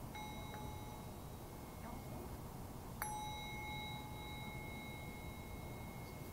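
Meditation bell struck twice. A light strike comes just at the start and a stronger one about three seconds in, each ringing on in several clear tones. It marks the end of the sitting.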